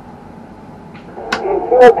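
A low, steady background hum, then a man's voice starting a little over a second in.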